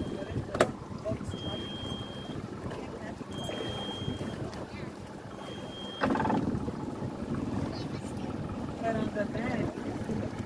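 A boat's motor running steadily under way, with wind on the microphone and water rushing past the hull; the noise jumps louder about six seconds in.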